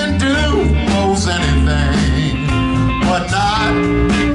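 Live blues band playing: electric guitar, bass and drums under a wavering, bending lead line, which is most likely amplified blues harmonica played into a cupped vocal microphone.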